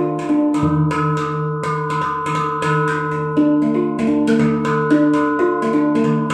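Handpan (hang) played by hand: a steady stream of quick finger strikes on its tone fields, several a second, each note ringing on and overlapping the next.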